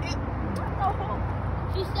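Steady low hum of a car engine idling, with a few faint short pitched sounds over it about half a second in.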